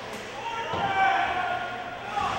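Shouting voices in an ice hockey rink, swelling to a loud shout about halfway in. A dull thud comes just before the peak, from the boards or the glass being hit during play.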